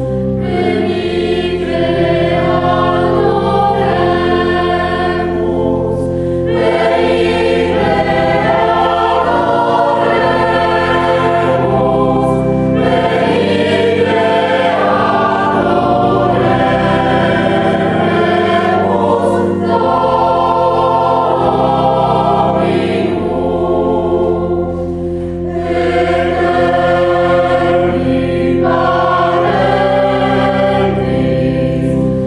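A mixed choir of sopranos, altos, tenors and basses singing a Christmas carol, over sustained low accompaniment chords, with a brief softer passage about five seconds before the end.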